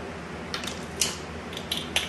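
A few light clicks and clinks as a measuring spoon and sauce bottle are handled. There are about four short clicks, the loudest about a second in.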